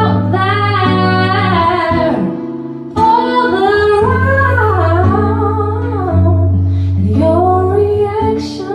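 A woman singing long, bending phrases into a microphone over a fingerpicked acoustic guitar, played live. One phrase trails off about two seconds in, and the next starts strongly a second later.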